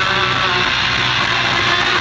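Live rock band playing, with electric guitar to the fore and little or no singing, heard from the crowd through a camera microphone.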